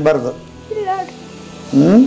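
An elderly woman weeping aloud: high, wavering cries, one trailing off just after the start, a fainter one about a second in, and a rising one near the end.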